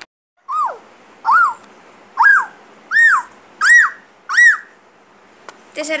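A toddler's voice imitating an animal call: six short, high calls, each rising and then falling in pitch. They come a little under a second apart and climb slightly higher with each call.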